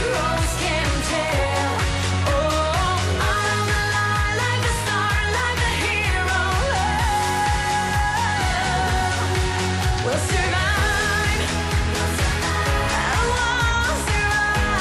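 A woman singing a pop song live into a handheld microphone over an upbeat backing track with a steady beat and bass.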